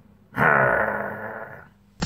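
A man's wordless, drawn-out vocal sound, a low grunt, starting a moment in and fading away over about a second.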